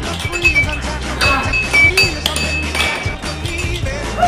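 Air hockey puck and mallets clacking in quick, irregular sharp hits, over electronic arcade-machine music and beeps.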